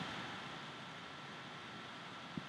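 Faint steady hiss of room tone with a thin, faint steady whine beneath it; nothing else sounds.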